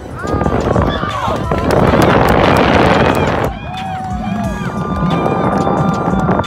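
Spectators and players shouting and cheering at a football game, many voices calling out at once. The crowd noise swells to its loudest in the middle, dips briefly, then picks up again.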